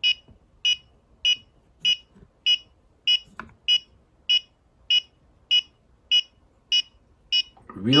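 Handheld EMF meter sounding its alarm: short, evenly spaced high beeps, about one every 0.6 s. The beeping signals a magnetic field of around 100 milligauss at the transformer's core.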